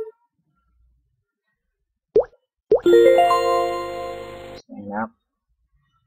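Quiz game sound effects: a short rising plop as a tile is clicked, then a second plop followed by a bright chime that builds upward note by note and rings for about two seconds, the cue for a correct word match.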